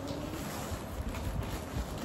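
A thin plastic bag rustling and crinkling as it is handled and opened, with a few soft low bumps.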